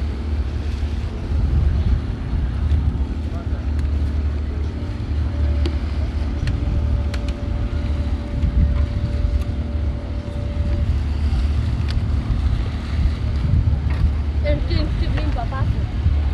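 Boat engine running with a steady deep rumble and wind buffeting the microphone; a steady higher hum joins for a few seconds midway, and faint voices are heard near the end.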